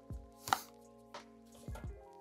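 A handful of short knocks and taps from beauty products and packaging being handled and moved about, over soft background music.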